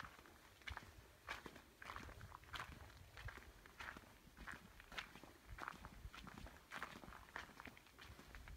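Footsteps crunching on a gritty sandy-dirt and sandstone trail at a steady walking pace, about one and a half steps a second, faint.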